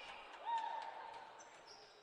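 Faint basketball court sounds: sneakers squeaking on the hardwood floor, one longer squeak about half a second in and short high ones near the end, with faint ball bounces.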